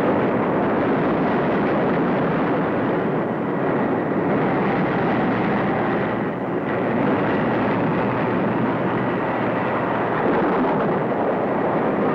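Sound effect of a tidal wave on a film soundtrack: a loud, steady noise of rushing, churning water.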